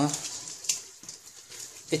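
Hands rubbing a butter-and-spice marinade into a raw lamb shoulder in a steel bowl: soft, wet squishing and rubbing, with one short sharper sound under a second in.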